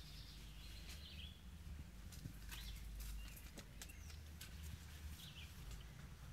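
Quiet outdoor ambience: a steady low rumble with faint bird chirps about a second in and again near the end, and a few soft clicks.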